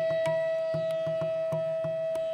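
Hindustani classical music in Raga Malkauns: bamboo flute (bansuri) with tabla. A high tone holds steady over a quick run of tabla strokes with deep bass-drum pulses.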